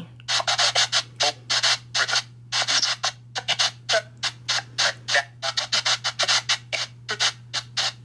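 SBX12 spirit box app on a phone sweeping through radio frequencies: rapid, choppy bursts of static and clipped radio fragments, several a second, over a steady low hum.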